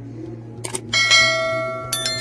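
A bell-like chime is struck about a second in and rings on, slowly fading, then is struck again just before the end.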